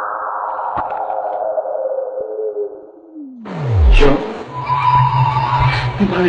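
Electronic film-soundtrack effect: a steady drone that fades away, then a tone sliding steeply down in pitch about three seconds in, followed by a noisier passage with a steady high tone.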